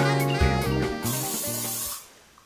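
Background jazz music that fades out near the end, with an even hiss of spray joining it about halfway through.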